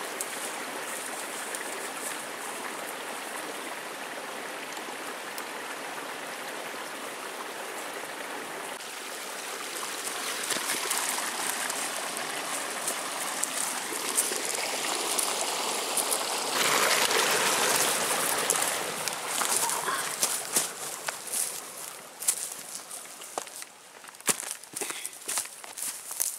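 A creek running with a steady rush of water that swells louder partway through. In the last few seconds, footsteps crackle and rustle through dry leaves and brush.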